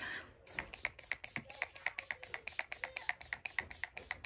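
ColourPop No Filter setting spray pumped rapidly, a fast, even run of short mist spritzes, about seven a second, starting about half a second in.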